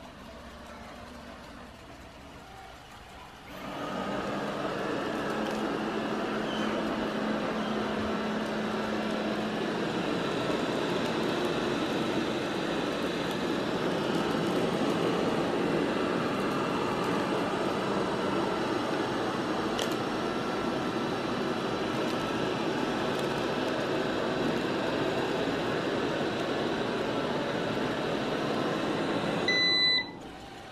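eufy RoboVac 11S robot vacuum starting up about three seconds in and then running steadily on carpet, suction motor and brushes going. Near the end there is a short electronic beep and the running stops.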